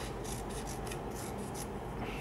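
Scissors snipping through a strip of kinesiology tape in a series of short, irregular cuts, with faint rubbing of the tape being handled.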